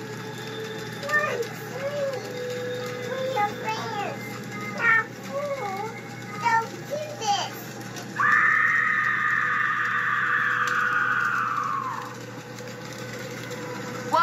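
High children's voices talking and calling out. About eight seconds in comes a loud, steady hissing noise lasting about four seconds, which sinks in pitch and dies away.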